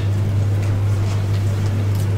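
A steady low hum with no other sound.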